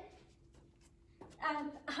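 A short quiet pause with a few faint scuffs as a body shifts on a floor mat, then a woman's voice resumes speaking a little over a second in.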